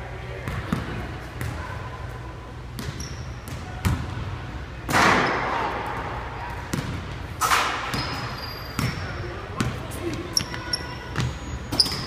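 Basketballs bouncing on a hardwood gym floor, scattered knocks through a large, echoing hall, with a few short high squeaks and a steady low hum. Distant voices murmur throughout, and a loud rushing burst comes about five seconds in.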